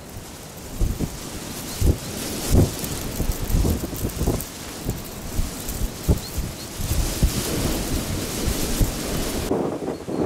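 Wind buffeting the microphone in gusts: a steady hiss with irregular low thumps.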